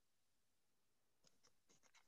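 Near silence, with a quick run of about six faint clicks in the second half.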